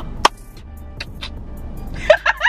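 Steady low hum inside a car cabin with faint background music, and one sharp click or tap about a quarter second in.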